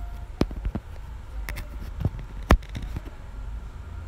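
Scissors cutting through sequin fabric on a tabletop: a scattering of sharp clicks and snips, the loudest about two and a half seconds in.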